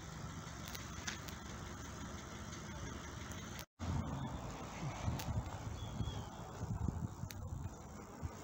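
Steady outdoor rumble with wind buffeting a handheld camera's microphone. The sound drops out completely for a split second a little before halfway, and after that the low gusts come irregularly.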